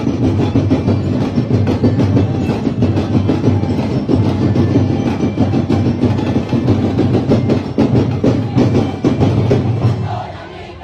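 Sinulog street-dance drum band playing a loud, fast, driving drum beat.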